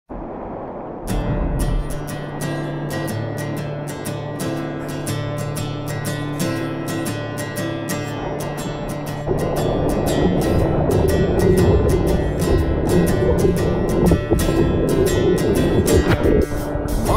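Background music: an instrumental song intro with a steady beat and a bass line, which grows louder and fuller about nine seconds in.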